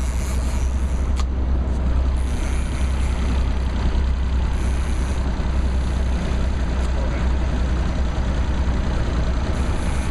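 Boat's outboard motor running steadily under a constant low rumble, with the rushing wash of fast river water around the hull.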